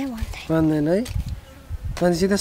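A short closed-mouth "mm" hum from a person, about half a second long, held on one pitch and rising at the end.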